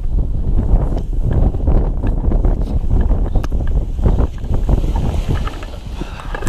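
Gusty wind rumbling on the camera microphone, with scattered clicks and rustles throughout.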